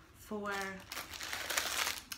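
Plastic packaging crinkling in the hands, starting about a second in.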